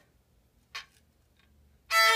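A small child's violin sounding one bowed note that starts near the end, after a pause with only a brief faint scrape about a second in.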